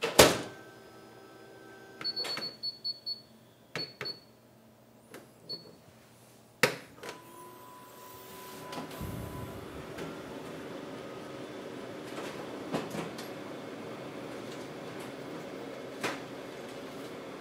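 Office photocopier: its lid shuts with a loud clack, then come a few short high button beeps and a clunk. About eight or nine seconds in, the machine starts up and runs with a steady whirring hum.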